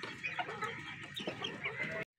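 Domestic fowl making a scatter of short, soft clucking calls.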